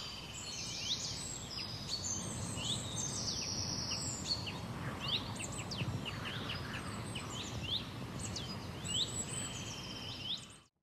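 Many small birds chirping and twittering, short quick high calls several times a second, over a steady outdoor background hiss: a birdsong nature ambience.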